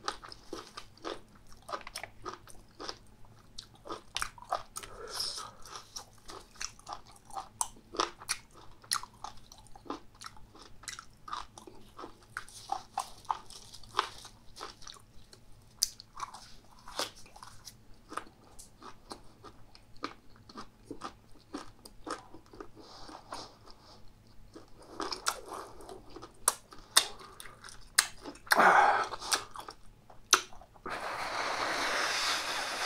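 Close-miked chewing and crunching: a mouthful of raw fermented skate with red pepper paste in a perilla leaf, bitten and chewed with many sharp crunches. Near the end comes a loud breathy burst.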